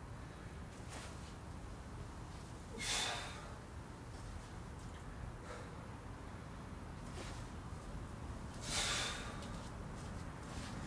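A man breathing out hard while doing sit-ups: two loud, short exhalations about six seconds apart, around three seconds and nine seconds in, with fainter breaths between, over a steady low background hum.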